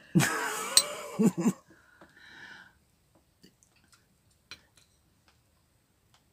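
A voice in the first second and a half, then a few faint, scattered clicks of a spoon against a small glass as strawberries are spooned out of it.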